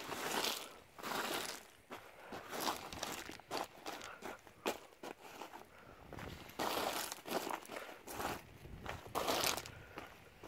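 Loose crushed stone crunching and scraping as it is pushed about to level it, in irregular bursts, the largest shortly after the start, around the seven-second mark and again about nine and a half seconds in.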